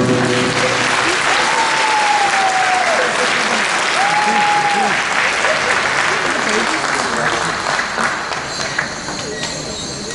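Audience applauding after a dance performance ends, with two long high cheers rising above the clapping in the first half. The applause slowly dies down toward the end.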